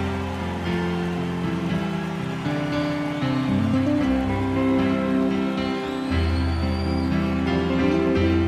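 Background music of sustained held chords that shift every second or so.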